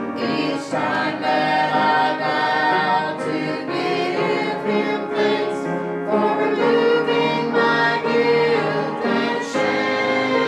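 Small mixed church choir of men and women singing a gospel hymn together, with sustained notes.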